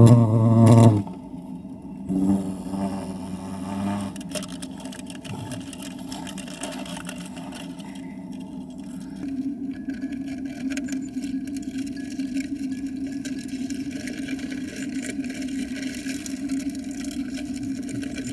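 Wasp wings buzzing inside a wooden birdhouse: a steady low hum that grows stronger about halfway through.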